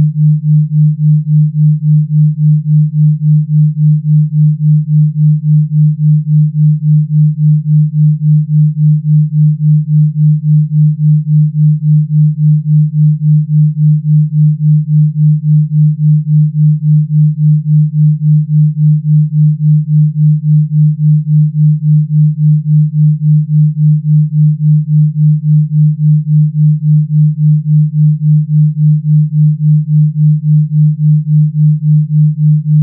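Electronically generated low sine tone, a Rife frequency, held at one steady pitch and pulsing evenly in loudness about three times a second.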